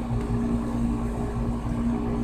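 A steady motor drone with a constant low tone and a rumble beneath it, unchanged throughout.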